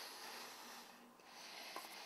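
Faint noisy breaths from a person sucking on a chocolate Creme Egg held at the lips, with a short break about a second in.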